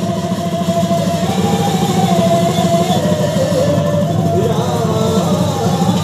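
Live Sattriya Bhaona accompaniment: khol drums beaten in a fast, even rhythm with cymbals, under one wavering melody line.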